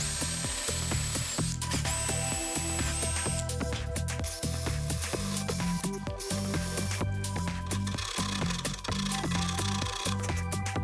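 Cordless drill boring small holes into plywood, its motor whining in short runs, twice in the first three seconds, over electronic background music with a steady beat.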